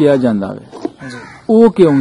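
A man speaking Punjabi, asking a question.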